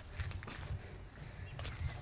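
Low, uneven wind rumble on the microphone, with a few faint ticks near the end.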